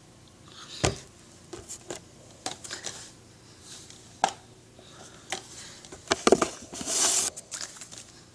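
Handling noises close to the microphone: a string of knocks and taps as a plastic water bottle and a paperback book are moved about. The loudest knocks come about a second in and around six seconds, with a short rustle near seven seconds.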